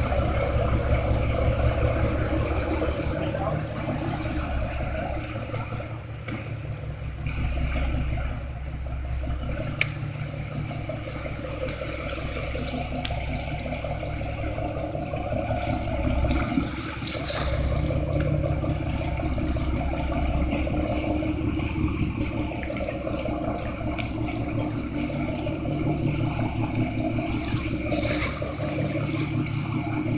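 Boat engine running steadily under the hiss of wind and water, with two brief louder hissing bursts, one a little past the middle and one near the end.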